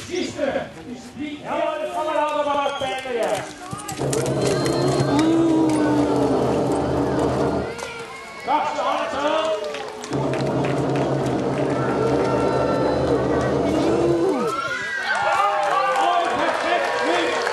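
A man's voice over a public-address loudspeaker, speaking in phrases with pauses. In two long stretches it runs over a steady low hum that starts and stops abruptly.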